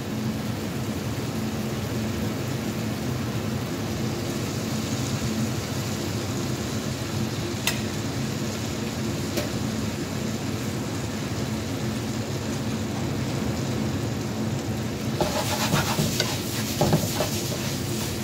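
Pork chow mein sizzling in a frying pan over a steady low kitchen hum, with two single clicks about halfway through. In the last few seconds, metal tongs toss the noodles in the pan with a run of scraping and clicking.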